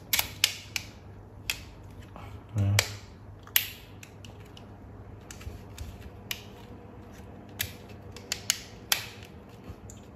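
Irregular sharp clicks and taps of the plastic housing and head frame of a Braun Series 5 electric shaver as it is handled and its parts are pressed and snapped into place during reassembly.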